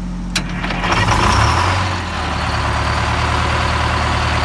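Detroit Diesel 8V-71 two-stroke V8 diesel of a 1980 GMC RTS bus cold-starting: a click about a third of a second in, a brief crank, then it catches about a second and a half in and settles into a steady idle.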